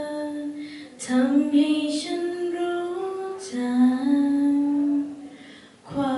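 A woman singing a Thai ballad into a microphone in long held notes, with a short break about a second in, a new phrase partway through, and the voice fading away near the end.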